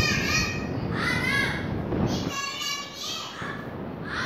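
Children's voices speaking, high-pitched, over background noise that falls away a little past halfway.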